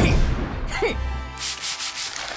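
Cartoon sound effects over music: a sudden hit with falling-pitch slides at the start and again just before a second in, then a hissing, rasping noise like scrubbing or a whoosh near the end.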